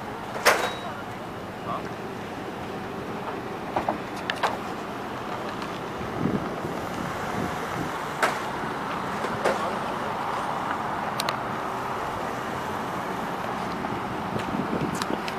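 Cars driving past on a city street, a steady traffic hum that grows louder over the second half. There is a sharp click about half a second in and a few fainter ticks later.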